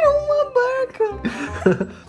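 A woman whimpering in distress: a drawn-out, wavering cry, then a few shorter broken sounds.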